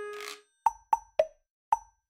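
The tail of edited-in music: a held note and a short hiss that stop about half a second in. Then four short pitched pop sound effects, unevenly spaced, each dying away quickly.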